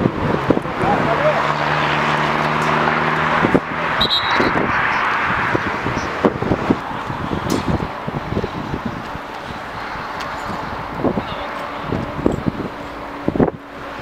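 Live sound of a small-sided football match on artificial turf: players' shouts and short knocks of the ball, with wind on the microphone. Early on, a steady engine hum runs for about three seconds.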